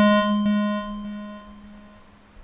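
A single square-wave synth note, G#3, played on WerkBench's SquareClean instrument. It sounds as a key is tapped and fades out gradually over about two seconds.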